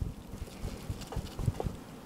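Long slicing knife sawing back and forth through a smoked brisket flat: quiet, irregular scraping with small ticks as the blade works through the bark and meat and touches the cutting board.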